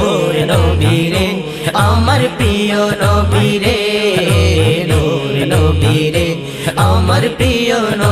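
Bengali naat music in a stretch without lyrics: voices chanting and humming over a deep beat that pulses about twice a second.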